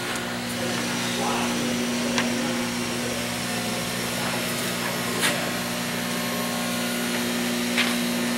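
Dynapower 200 A, 12 V plating rectifier running under load into a load bank: a steady electrical hum under an even rushing noise, with a few faint clicks.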